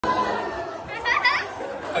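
Voices and chatter in a large hall, with a brief, louder high-pitched exclamation about a second in.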